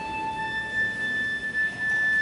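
Orchestral music: a high, near-pure sustained note that moves up an octave about half a second in and is held there.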